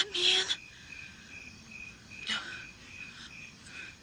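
Insects chirping in a steady, high, pulsing trill, with a brief loud noisy sound in the first half second.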